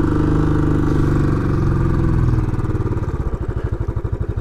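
Royal Enfield Classic 500's fuel-injected single-cylinder engine running under light throttle. About two and a half seconds in, the throttle is eased off and it drops to a slower, evenly spaced thumping as the bike rolls in.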